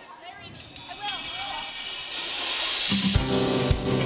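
A live band starts a song: cymbal shimmer and light drum strokes build up first, then the full band comes in loudly about three seconds in.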